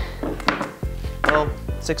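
Wooden boards knocking against each other as they are lifted and shifted, with two sharp knocks within the first second.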